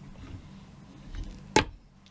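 A wire soap cutter slicing a bar off a loaf of cold process soap: one sharp snap about one and a half seconds in as the wire cuts through the soap and the wooden cutter arm comes down.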